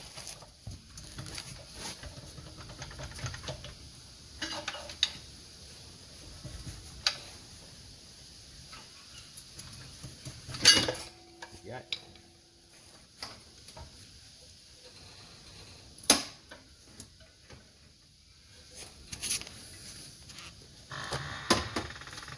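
Scattered light metallic clinks and scrapes from an unbolted automatic transmission being wriggled loose on a hydraulic floor jack, with two sharp knocks, about 11 and 16 seconds in.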